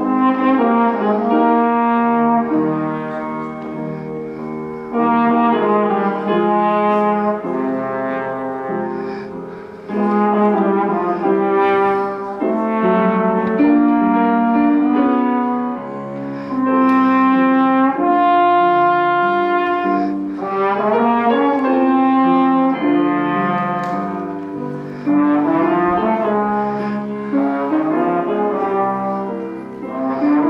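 Slide trombone playing a melody over grand piano accompaniment, in held notes grouped into phrases with short breaks between them.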